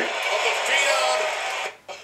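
Wrestling broadcast audio: a commentator's voice over steady arena crowd noise, cut off abruptly for a moment near the end where the footage changes to another match.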